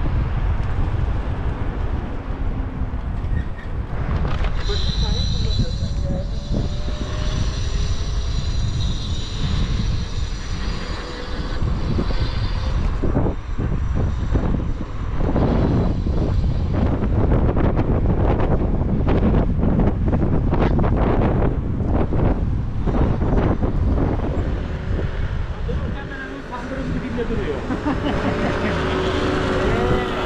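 Wind buffeting the microphone of a helmet camera on an electric scooter riding at about 30 km/h, with tyre and road noise under it. A thin high whine runs from about four seconds in to about twelve seconds.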